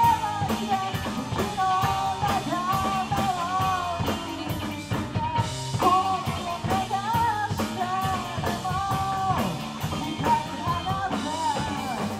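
A rock band playing live: drum kit, electric guitar, bass and keyboard, with a lead vocal carrying the melody in phrases over the steady beat.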